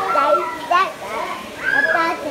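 A young child's high-pitched voice, speaking or vocalising with no clear words.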